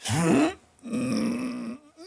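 A man grunting and groaning with effort as he stretches his legs: a short falling grunt, then a longer held groan.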